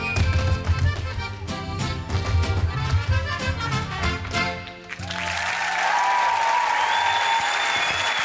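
Mariachi band with trumpets and guitars playing a fast, rhythmic piece that stops about five seconds in, followed at once by studio audience applause and cheering.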